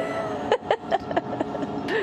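A woman laughing, in short voiced bursts, over the steady hum of the space station's cabin air.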